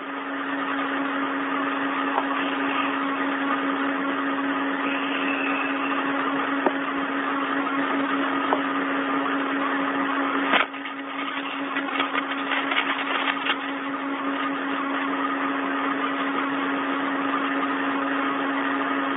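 Open spacewalk air-to-ground radio channel with nobody talking: a steady hiss with a constant low hum, with a sharp click and a brief drop in level about ten and a half seconds in.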